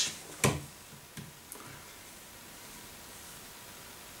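One sharp click about half a second in and two faint ticks a little later, then quiet room tone.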